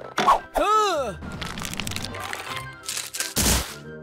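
Orchestral background music with cartoon sound effects laid over it: a sharp crack just after the start, a short rising-and-falling vocal grunt about a second in, and a loud crack about three and a half seconds in.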